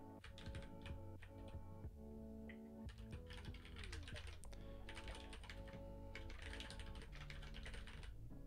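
Typing on a computer keyboard: clusters of quick keystroke clicks, densest through the second half, over quiet background music.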